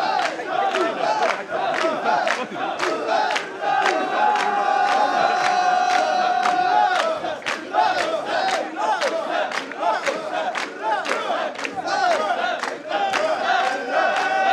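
A large crowd of mikoshi bearers shouting a rhythmic carrying chant in unison as they bear the portable shrine, many voices overlapping. Sharp clacks come through about twice a second. A single long held note rises above the voices for about three seconds, starting some three seconds in.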